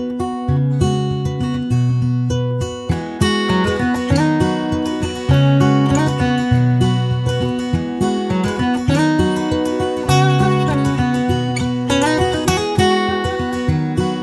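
Background music: an acoustic guitar picking and strumming a steady tune over a repeating bass line, growing fuller about three seconds in.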